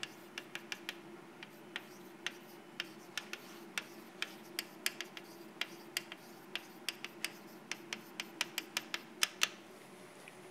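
Chalk writing on a blackboard: a quick, irregular run of sharp taps and short scratches as each capital letter is stroked out, about three to four a second and thickening toward the end.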